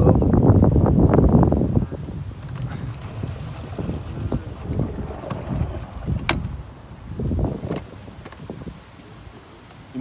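Water churning from a small boat's propeller, with wind buffeting the microphone, loudest for the first two seconds and then quieter. A single sharp click about six seconds in.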